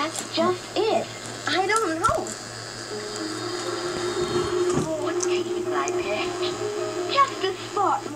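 Cartoon soundtrack played through laptop speakers and picked up in the room: a few spoken lines, then music holding steady notes for about four seconds. A faint low hum runs underneath.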